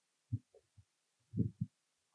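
A few soft, low thumps from a person moving and turning at a whiteboard, picked up on a head-worn microphone. There is one thump a little after the start and a quick cluster of three about a second and a half in.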